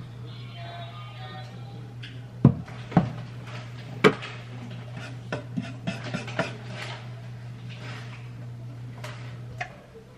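Background music with utensils clinking and knocking against a frying pan as salmon fillets are turned. A few separate knocks come in the first half, then a quicker run of clinks.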